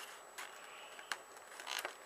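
Faint paper handling and a few soft clicks as tweezers pick at a sticker on a planner page to peel it off.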